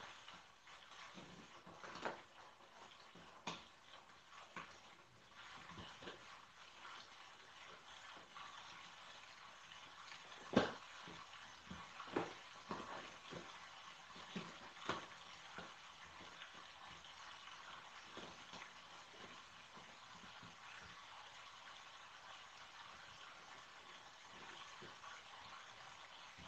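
Faint rustling and scattered light taps and crackles of masking tape being worked along the inside of a cardboard box, the sharpest tap about ten and a half seconds in and a few more over the next five seconds.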